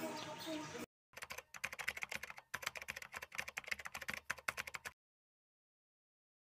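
Keyboard typing sound effect: a quick, irregular run of clicks lasting about four seconds, stopping abruptly into silence. It plays under a caption that types itself out on screen. It comes after a short stretch of faint background noise that cuts off about a second in.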